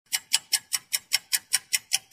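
Ticking-clock sound effect: sharp, evenly spaced ticks, about five a second.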